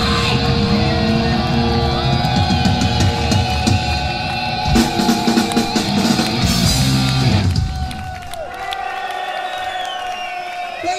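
Heavy metal band playing live, with distorted electric guitars and a drum kit. About three-quarters of the way through, the drums and heavy low end drop out and it gets quieter, leaving thinner sustained guitar tones.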